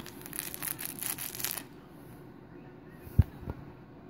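Crinkly fabric baby toy rustling and crackling as it is handled for about a second and a half, then a single thump and a lighter knock about three seconds in.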